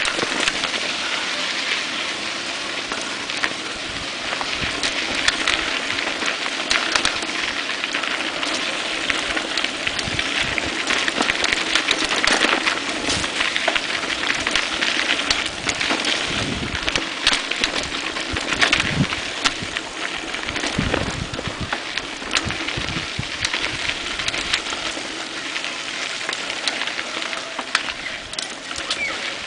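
Mountain bike tyres rolling over a dirt track with loose stones: a steady crackling rush dotted with many small clicks and knocks from the bike.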